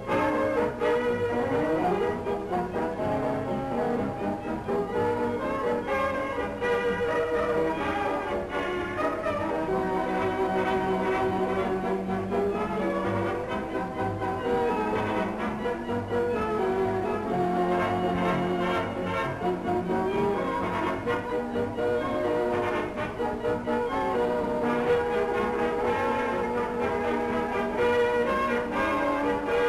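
Cabaret orchestra playing a melodic number, from a 1936 newsreel soundtrack.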